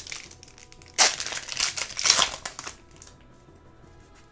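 Foil wrapper of a Yu-Gi-Oh booster pack being torn open and crinkled by hand: a burst of crackly crinkling starts about a second in and lasts nearly two seconds.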